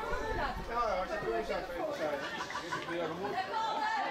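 Indistinct chatter of spectators, several voices talking at once.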